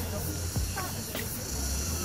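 Outdoor street noise: a steady hiss over a low rumble that comes and goes, with brief snatches of voices.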